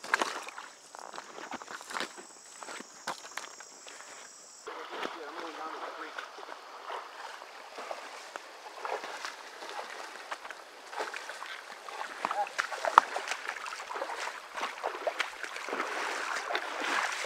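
Footsteps crunching on creek gravel with a steady high hiss, then, after a sudden change about five seconds in, the even rush of flowing creek water with scattered small crackles.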